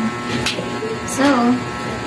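A woman's voice saying a word or two over a steady electrical hum.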